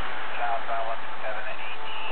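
Faint, indistinct speech over a steady hiss from a patrol-car recording.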